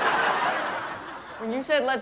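Sitcom studio audience laughter that swells and then dies away over about a second and a half, followed near the end by a man starting to speak.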